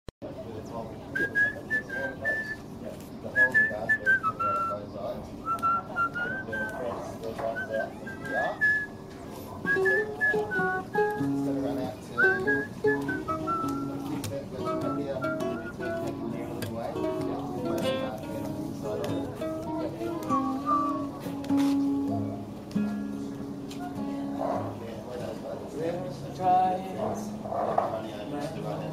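A person whistling a wavering tune through the first half, then plucked acoustic guitar notes that take over from about the middle on.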